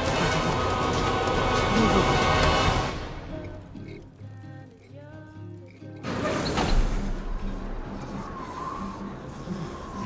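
Film soundtrack music over the dense noise of a rain storm. About three seconds in the storm noise falls away, leaving soft music, and at about six seconds a sudden loud rush of noise comes in and settles to a quieter bed.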